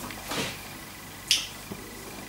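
A pause in a quiet room, broken by one brief sharp click a little past halfway.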